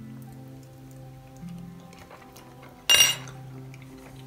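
Metal fork and knife set down on a plate, making one sharp clink about three seconds in, over quiet background music with steady held notes.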